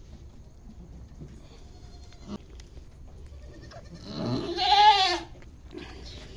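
A goat doe in labour bleating once: a loud call about four seconds in, lasting about a second, that rises and then falls in pitch.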